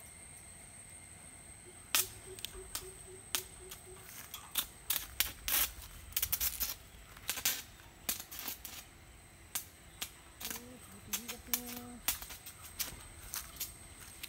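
Steel pipes knocking and clinking against a scrap-steel frame as they are handled: an irregular run of sharp knocks starting about two seconds in.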